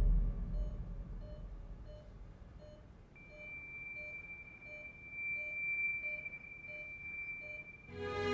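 Operating-room patient monitor beeping evenly, a little under two beeps a second, as dramatic music fades out at the start. About three seconds in, a steady high tone comes in and holds alongside the beeps.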